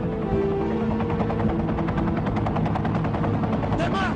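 Film score music with long held notes, over a rapid, evenly repeating chopping or rattling sound.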